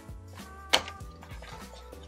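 Soft background music, with one sharp click about three quarters of a second in as the cardboard earphone box is handled and its white sleeve slid off.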